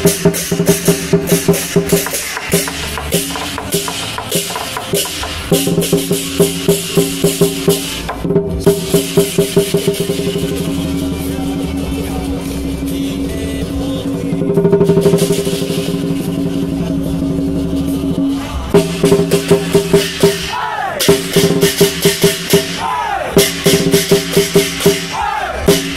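Lion dance percussion: a big drum beaten in a fast, steady rhythm with ringing gong and cymbals, breaking into a sustained drum roll about ten seconds in that swells in the middle, before the sharp beat returns near the end.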